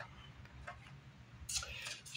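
Quiet handling sounds: a few faint ticks, then a brief rustle near the end as a sheet of notepaper is picked up.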